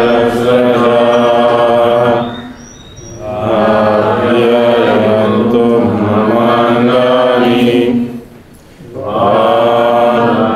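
A man's voice chanting a mantra in long, drawn-out phrases, with two short pauses for breath, the first a little past two seconds in and the second near the end.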